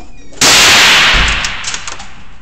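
A single .22 rifle shot about half a second in, loud enough to overload the recording, its echo in the indoor range dying away over about a second, followed by a few faint clicks.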